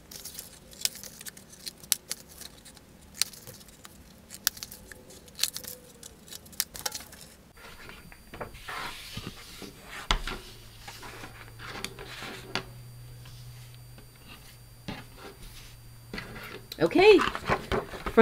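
Scissors snipping through card stock, a quick run of sharp clicks through the first seven seconds or so, then card rustling and sliding as the sheets are handled.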